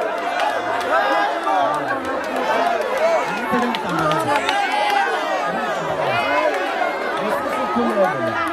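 A crowd of people talking at once, many voices overlapping in a steady babble.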